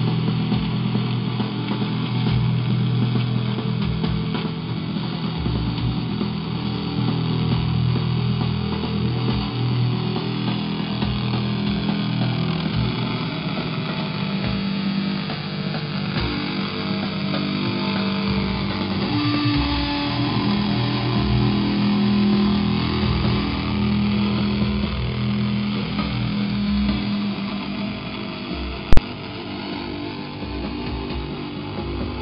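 Electric guitar played with a bow through effects: long, slowly swelling sustained notes that hang and shift in pitch without distinct picked attacks. A single sharp click sounds near the end.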